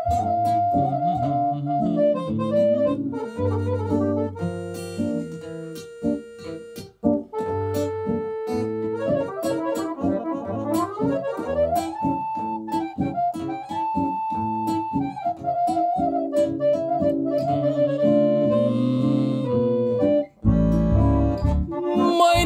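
Lăutar-style instrumental music: an accordion plays a melody of held and sliding notes over a steady rhythmic accompaniment.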